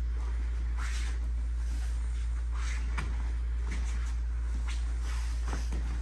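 Two people sparring on foam mats: sporadic short scuffs and light hits from their feet and gloves, over a steady low hum.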